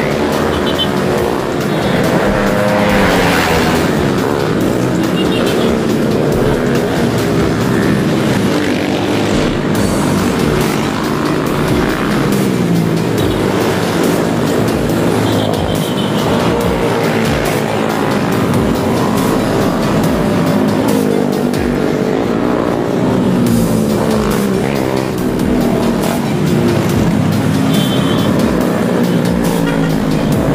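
Several motorcycles riding past one after another, their engines running and revving, with pitch rising and falling throughout as they pass.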